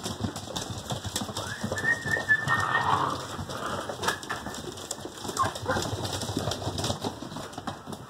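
Rottweiler–Newfoundland cross puppies' paws and claws clicking and scrabbling on a wood floor as the litter crowds about, with a thin high puppy whine about two seconds in and short whimpers a few times after.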